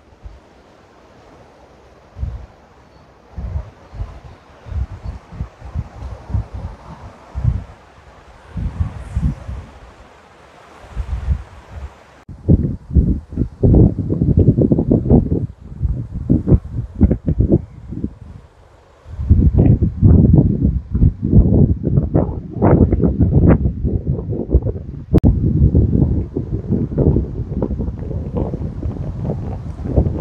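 Wind buffeting the microphone in irregular gusts, a low rumble that comes and goes. The gusts are light and sparse in the first dozen seconds, then heavier and almost constant in the last ten seconds.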